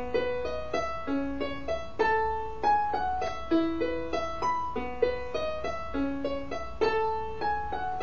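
Digital keyboard on a piano voice playing broken chords, each note struck and left to ring as the pattern repeats every couple of seconds; no singing.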